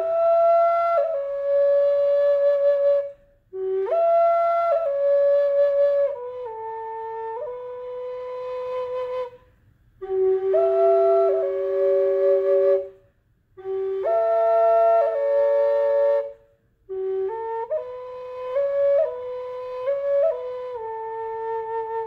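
Wooden Native American drone flute played in five short phrases, each a melody note line stepping over a steady lower drone note sounding at the same time, with brief breath pauses between phrases.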